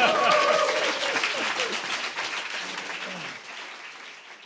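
Audience applauding at the end of a live band's song, with a short burst of laughter at the start; the applause fades away toward the end.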